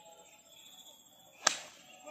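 A golf club striking the ball on a full swing: one sharp crack about one and a half seconds in, fading quickly.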